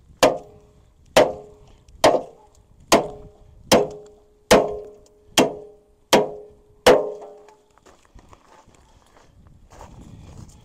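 Sledgehammer striking the steel frame of an old farm-wagon running gear: nine hard, ringing metal blows, a little under one a second, stopping about seven seconds in.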